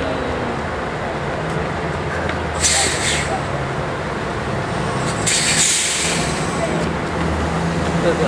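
Scania L113CRL buses' diesel engines idling steadily, with two short bursts of compressed-air hiss from the air brake system, one about two and a half seconds in and a slightly longer one about five seconds in.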